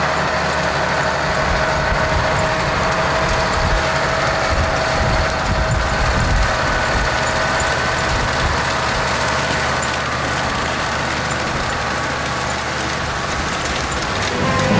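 A Valtra tractor's engine running steadily under load as it pulls a Claas Volto 1100 T rotary tedder through cut grass, with the tedder rotors turning. A steady whine runs through the first half and fades out around the middle.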